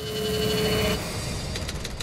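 Title-card sound effect: a noisy swell with a steady hum for about a second, then a fast run of sharp typewriter-like clicks, about ten a second.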